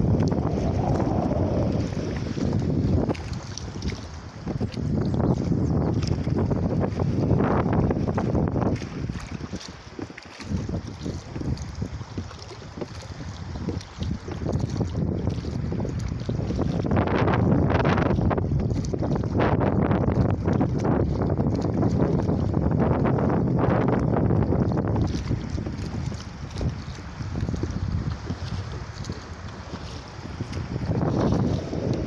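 Strong wind buffeting the microphone in gusts, over a small rowboat being rowed by oars through choppy water.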